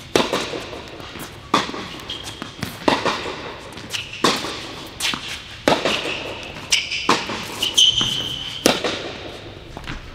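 Tennis rally: a racket strikes the ball about every second and a half, each hit echoing in a large indoor hall. Near the end there is a brief high squeak, typical of court shoes on a hard court.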